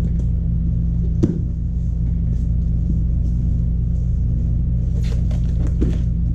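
A cardboard shipping box being opened and its plastic-wrapped contents handled: a sharp snap about a second in, then a few crackles of cardboard and plastic near the end. Under it all runs a loud, steady low hum from shop equipment.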